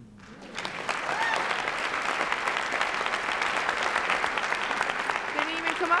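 Audience applause in an auditorium, starting about half a second in and running on steadily, with a few voices talking close by near the end.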